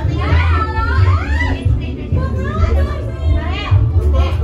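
Voices, a child's among them, over loud music with a pulsing bass beat.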